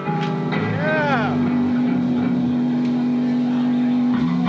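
Live rock band's electric guitars and bass holding a steady droning note, with a note that bends up and back down about a second in.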